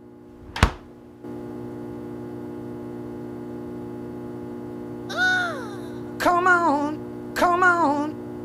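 A single loud thunk about half a second in, then a steady hum that steps up a moment later. From about five seconds in, a falling pitched sound, then a wavering pitched phrase that repeats about once a second, like music.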